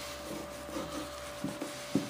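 Paper towel rubbing back and forth over a mold and its plug, buffing on wax, with a few light knocks of hand and mold on the bench, the last near the end.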